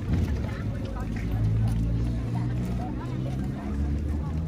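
Low, steady engine drone of a moored passenger ferry, with faint chatter from people walking by.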